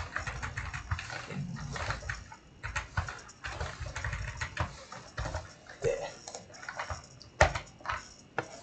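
Typing on a computer keyboard: irregular keystroke clicks, with one louder key click near the end.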